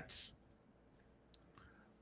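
Near silence: a pause in the talk, with one faint, brief click a little after the middle.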